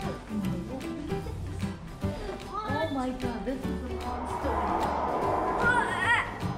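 Background music with a steady beat, with a voice briefly heard in the middle and again near the end.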